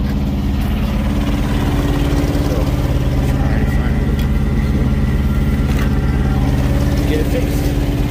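Truck engine idling steadily, low-pitched and even.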